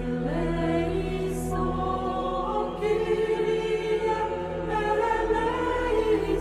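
A choir singing slow, sustained chant, the voices holding long notes that change every second or two over a steady low note underneath.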